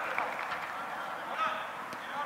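Distant shouts and calls of players on a football pitch during open play, over a steady background of open-air ground noise.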